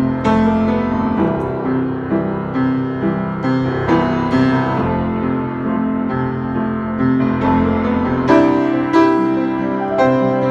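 A freshly tuned Hallet, Davis & Co UP121S studio upright piano played with both hands: struck chords and melody notes ringing on, with a few louder accented chords near the end.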